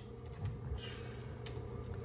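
Quiet room tone: a steady low hum, with a brief faint rustle about a second in.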